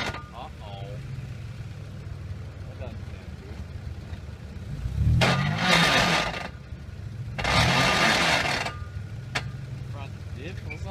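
A 4x4 SUV's engine running low under load on a steep dirt climb, then revving up and down twice, about five and seven and a half seconds in. Each rev comes with a loud rush of noise from the tyres scrabbling in loose dirt.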